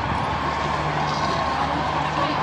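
Steady hubbub of a large crowd, many indistinct voices blending into an even background noise.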